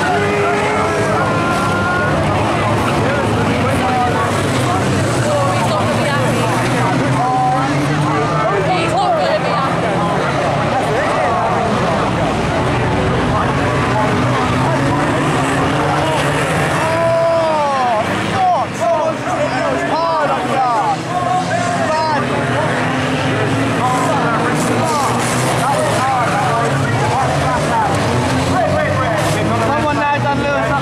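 Engines of several banger racing cars running and revving together, their notes rising and falling, with noisy spectators talking close by.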